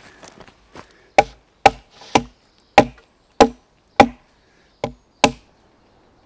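A blade chopping into a wooden log: eight sharp, woody strikes about half a second apart, starting about a second in and stopping shortly before the end.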